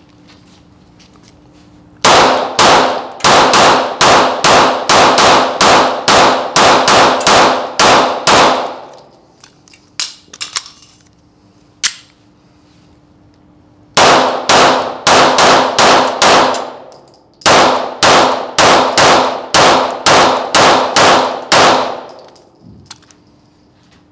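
Archon Type B 9 mm pistol fired in two long strings of rapid shots, about three a second, each shot echoing off the range's concrete walls. A few metallic clicks come in the pause between the strings, as the pistol is reloaded.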